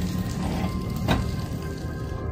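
Background music over the steady hiss of rain and tyres on a wet street, with a low rumble from the car. A single sharp click about a second in.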